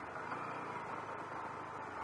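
Honda NT700V motorcycle's V-twin engine running while riding, under steady wind and road noise.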